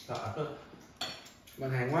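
Cutlery clinking against dishes at a meal: a sharp clink at the start and another about a second in, with voices talking near the end.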